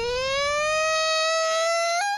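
A long, high-pitched wailing cry that rises slowly in pitch and then holds steady.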